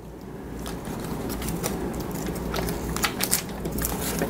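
Handling noise from a small plastic security camera being turned over in the hands, with a few short clicks and taps over a low, steady rumble.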